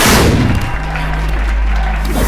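A loud film fight-scene impact effect at the very start, a crash as of a body slamming onto the ring, dying away within about half a second, followed by a steady low musical drone from the score.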